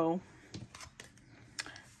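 A few faint, short clicks of tarot cards being handled as a card is drawn from the deck, about one every half second.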